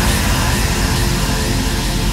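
Uplifting trance music at a section transition: a loud, even noise sweep over a steady low bass, with no clear beat.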